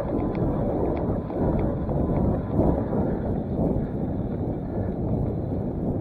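Wind buffeting the camera microphone over the rumble and rattle of a front-suspension bike rolling fast down a bumpy dirt road, with a few faint ticks in the first seconds.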